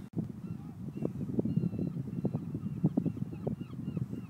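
Wind rumbling and buffeting on the phone's microphone, with repeated faint, short bird calls high above it.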